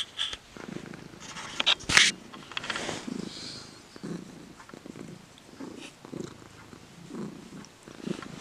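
Domestic cat purring close up while being stroked, a rhythmic low rumble that swells and fades with each breath. Two loud rustles in the first two seconds.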